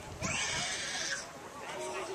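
Footballers shouting to each other across the pitch, voices at a distance. A rush of hiss lasts about a second, and a new shout starts near the end.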